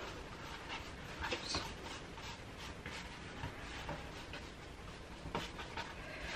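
Faint soft rubbing and a few light taps of hands rolling and curling yeasted bun dough on a floured baking tray, over a low steady background hum.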